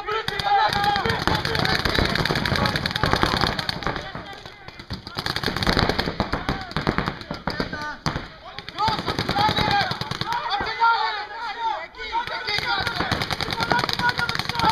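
Paintball markers firing in rapid strings of shots, with brief lulls, mixed with players' shouted calls.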